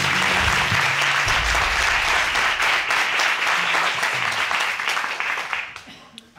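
Studio audience applauding, the clapping fading away near the end.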